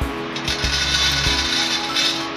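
Jowar (sorghum) grains dropped by hand into a hot, dry hammered-metal kadhai, a dense, dry rattling patter of small seeds on metal that starts about half a second in.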